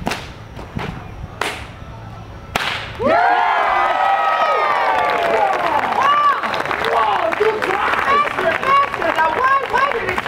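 A whip cracked four times in quick succession, aimed at the middle cup of a stack of paper Dixie cups. About three seconds in, several voices break into loud whooping and cheering that carries on to the end.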